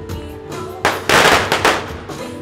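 A string of firecrackers crackling in rapid pops for about a second, the loudest sound here, over band music with drums.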